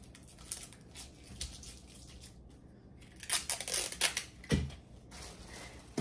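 Paper and tape being handled during box-and-tissue-paper crafting: scattered light clicks and rustles, then a louder stretch of scratchy rustling from about three to four and a half seconds in, ending in a low thump.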